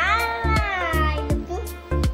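A young girl's long, high-pitched cry that falls slowly in pitch over about a second, over background music with a steady beat.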